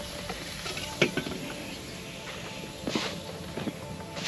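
Steady spray hiss of lawn irrigation sprinklers running, with a sharp knock about a second in and a few more knocks and clicks near the end as a cordless leaf blower is picked up and carried.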